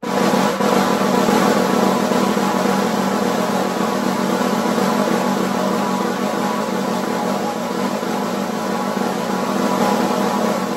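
Snare drum played with a press roll (buzz roll): both sticks pressed into the head so each stroke buzzes into many bounces, merging into one smooth, continuous roll. It starts abruptly and holds nearly level throughout, easing off slightly near the end.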